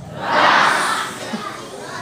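A crowd of schoolchildren calling out together, repeating the Russian word "raz" (one) back to the leader; the many voices blur into one loud shout that fades after about a second.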